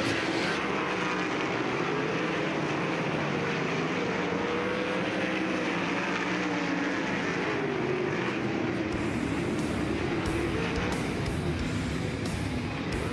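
A field of winged 410 V8 sprint car engines running together at reduced revs on the lap after the checkered flag, several engine notes drifting up and down against each other. Near the end, music comes in under the engines.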